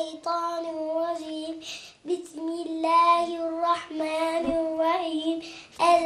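A young girl's voice in melodic Quranic-style chant, drawing out long held notes in two phrases with a short breath between them.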